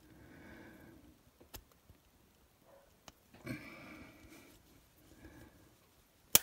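Near silence: faint soft handling sounds and breaths, with a couple of light clicks, as a rubber O-ring is worked over a metal lightsaber hilt with fishing line.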